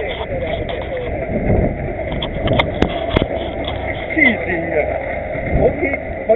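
Indistinct chatter of several people talking, over a steady low rumble on the camera microphone. Three sharp clicks come about halfway through.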